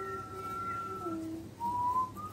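Someone whistling a tune: one long held note, a step down to a lower note, then a short rising note near the end.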